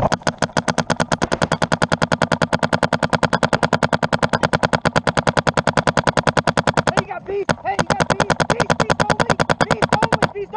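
Paintball marker firing in a rapid, even stream of about twelve shots a second, heard close from a camera mounted on its barrel. The stream stops briefly about seven seconds in, with one lone shot, then resumes.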